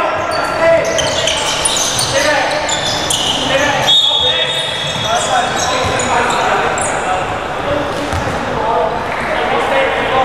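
Basketball game in a large gym: a ball bouncing on the wooden court, sneakers squeaking as players cut and stop, and players and spectators calling out, all echoing in the hall.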